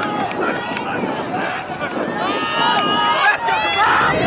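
Players and sideline spectators shouting across an open field, with several long drawn-out calls in the second half as the disc is thrown downfield.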